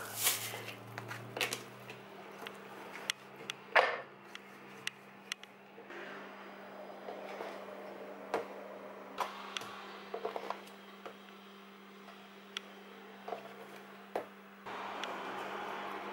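Faint scattered taps and light knocks as a plastic bench scraper cuts dough on a silicone baking mat and dough pieces are handled and set on a kitchen scale, the sharpest a little before four seconds in, over a steady low hum.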